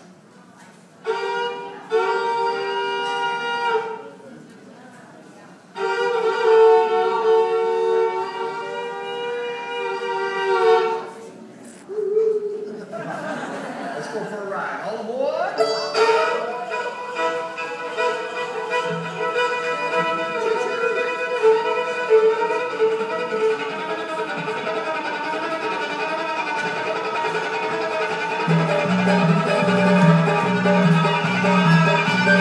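Solo fiddle imitating a train whistle: long held double-stop notes, two pitches sounding together, in separate blasts with short gaps, then a sliding smear about halfway through. It then breaks into a fast bluegrass fiddle run, and an upright bass joins with plucked notes near the end.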